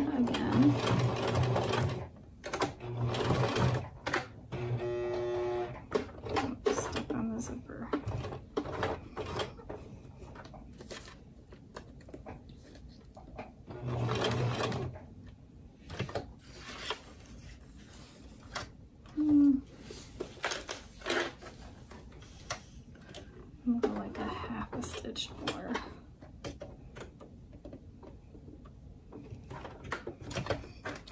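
Domestic sewing machine stitching a zipper onto vinyl in short runs: several bursts of stitching in the first six seconds, another about fourteen seconds in, with stops between for repositioning the work.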